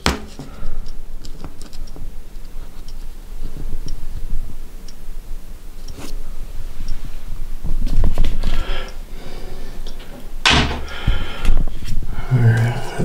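Handling noise from a camera being carried and moved about: small bumps, rustles and scattered clicks over a low rumble, with one louder rushing sound near the end.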